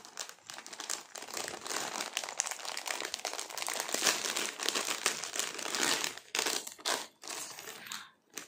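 Crinkling of packaging being handled, like a plastic cover or wrapping being crumpled: continuous for about six seconds, then a few shorter crinkles near the end.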